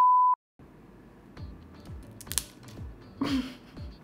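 A steady, high test-tone beep of the kind played with TV colour bars; it is the loudest sound and cuts off sharply about a third of a second in. After a brief moment of dead silence, background music with a steady beat plays.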